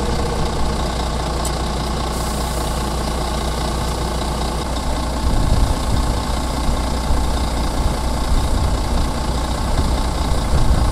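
Heavy diesel engines of recovery trucks running steadily while the semi-truck is winched up out of the ditch. Their low rumble grows louder and uneven about halfway through.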